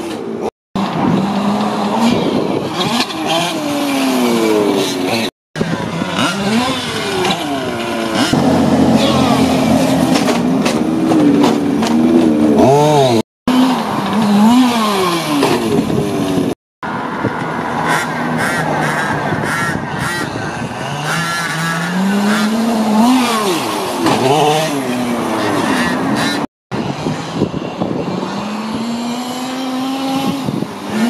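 Small two-stroke petrol engine of a King Motor X2 1/5-scale RC truck revving up and down over and over as it is driven. The sound drops out briefly five times.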